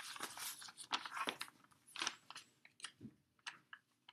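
Paper pages of a large picture book rustling and crackling in a run of irregular bursts as pages that have stuck together are pulled apart and turned by hand.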